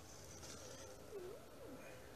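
Near silence: room tone, with a faint wavering tone in the background.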